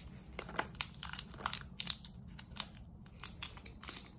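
Faint, irregular crinkling and light clicks of small plastic and foil packaging being handled by hand.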